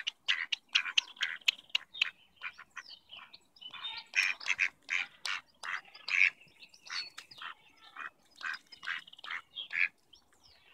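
Mallards calling close by: a fast run of short quacking calls, several a second, thinning out around the third second and picking up again from about four seconds in.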